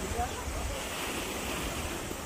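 Wind rumbling on the microphone over the hiss of small waves washing against a rocky shore.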